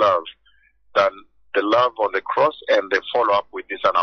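Speech only: a preacher's voice mid-sermon, with a short pause near the start.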